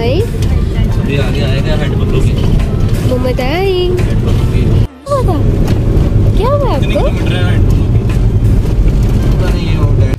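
Steady low road rumble inside a moving car's cabin, with short rising and falling voice sounds over it. The sound drops out briefly about five seconds in.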